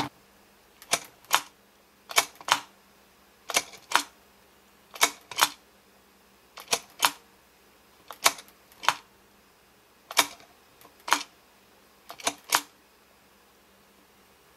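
Plastic expression-changing mechanism of a Pull Apart Olaf toy clicking as its head is pushed down and let up. The sharp clicks come mostly in pairs, about one pair every second and a half, and stop about a second before the end.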